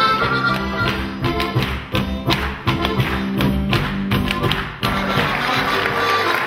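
Accordion-led Tyrolean folk dance music with a rapid series of sharp taps and thumps as the dancers strike the wooden stage with their shoes and rake handles. Near the end the music stops and applause begins.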